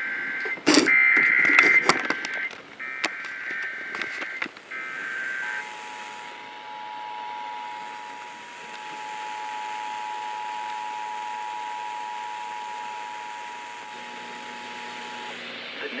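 Emergency Alert System activation heard from a radio speaker. Three short bursts of warbling SAME data-header tones, with a few clicks over them, are followed by about ten seconds of the steady two-tone EAS attention signal, which announces a severe thunderstorm warning.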